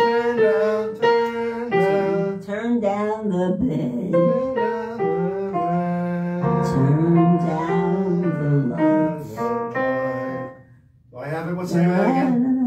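Piano playing a melody with a voice singing along without clear words. The music breaks off briefly near the end.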